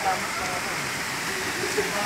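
Steady rush of running water: a stream pouring from a split-bamboo spout and splashing onto rock and a hand, with a waterfall behind.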